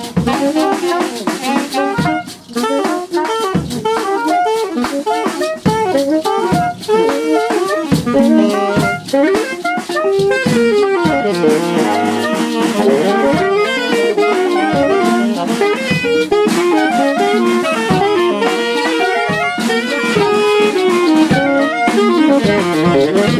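Free jazz improvisation: soprano and tenor saxophones play fast, overlapping, wandering lines over loose drum kit playing.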